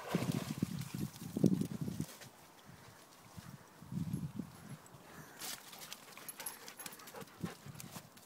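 A dog splashing as it climbs out of a river, water sloshing around it for about two seconds, then a shorter splashing about four seconds in and a few light clicks.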